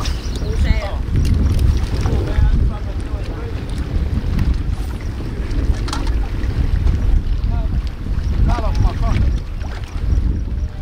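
Steady wind buffeting the microphone with a deep rumble, over the wash of choppy lake water against a rocky shore.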